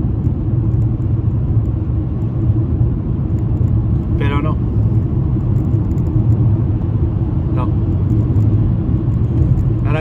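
Steady low rumble of road and engine noise inside a car cabin while driving on a highway, with a brief voice sound about four seconds in.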